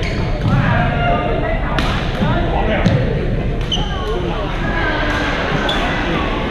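Echoing sports-hall hubbub of overlapping voices, with several sharp racket strikes on shuttlecocks about every two seconds during badminton rallies.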